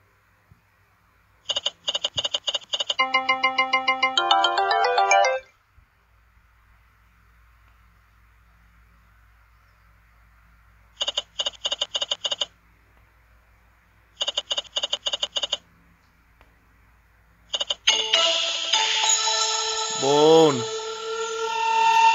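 Electronic sound effects of the Montezuma online video slot: bursts of rapid beeping as the reels spin and stop, and after the first spin a short rising electronic win jingle. Near the end comes a louder musical fanfare with a swooping tone as the bonus sequence triggers.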